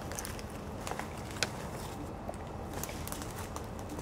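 Footsteps in dry leaf litter and twigs on a forest floor: scattered light crackles and snaps, with one sharper snap about a second and a half in.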